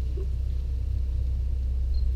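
A steady low rumble that holds an even level throughout.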